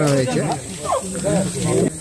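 Speech only: a man talking in Bengali.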